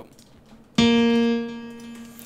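A single piano note from FL Studio's FL Keys plugin on its Grand Piano sample set, struck about a second in and ringing as it slowly fades.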